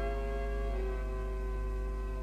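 Instrumental tango music: a held chord of the accompaniment slowly dying away, with no voice. A steady low mains hum from the old cassette transfer runs underneath.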